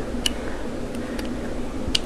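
A few faint clicks of a small metal Allen wrench tapping against a reflex sight while being fitted into its adjustment hole, over a steady hum and hiss.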